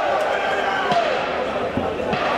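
Voices over arena noise around a boxing ring, with two dull thumps in the ring about one second and nearly two seconds in as the referee breaks a clinch.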